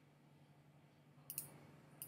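Computer mouse clicking: a quick pair of clicks about a second and a half in and another at the very end, over near-silent room tone.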